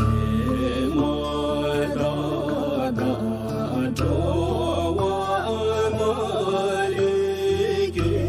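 A voice chanting a slow, ornamented devotional melody over instrumental backing with a sustained low drone. The bass shifts about halfway through.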